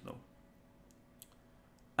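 Near silence: faint room hum with a few soft, short clicks around the middle, after the last word dies away.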